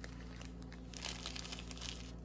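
Soft crinkling and rustling, a run of small crackles, as fabric-covered pocket tissue packs are handled and set down in a bowl.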